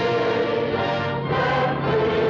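A choir sings long held notes with orchestral accompaniment in the film's closing music, moving to a new chord about a second and a half in.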